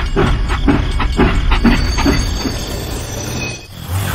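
Toy steam locomotive's chuffing sound, a rhythmic chug of about four beats a second, which stops suddenly near the end.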